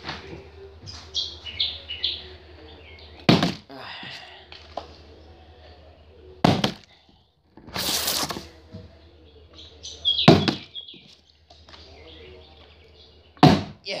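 Plastic water bottle with some water in it being flipped and coming down on a hard surface with a thunk, four times about three seconds apart, with a longer, noisier sound about eight seconds in.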